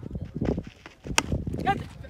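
Quick footfalls of a bowler's run-up on a dirt pitch, then one sharp crack a little over a second in as the bat hits a weighted tennis ball.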